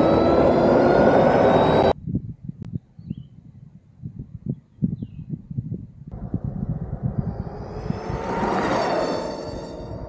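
Electric motorcycle's motor whine slowly rising in pitch as it accelerates, over wind rush, for about two seconds; then wind buffeting the microphone; then a vehicle approaching and passing with a whine that swells and fades near the end.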